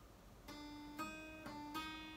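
Acoustic guitar playing a B7 chord, its notes plucked one after another: four notes starting about half a second in, each left ringing.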